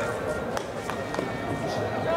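Baseball players' shouts and calls across an outdoor field during infield fielding practice, with a few sharp knocks about half a second to a second and a quarter in.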